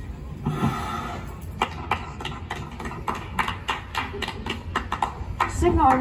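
A breath blowing out birthday candles, then a few people clapping in a steady rhythm of about three to four claps a second, heard from a film soundtrack over the screening's loudspeakers; voices come in near the end.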